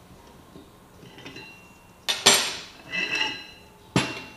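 Metal clutch parts clanking and ringing: two sharp clinks about two seconds in, a rattling clatter a second later, and a sharp knock right at the end. These come from the Can-Am Maverick X3 primary clutch being handled and set onto a steel holding fixture on the bench.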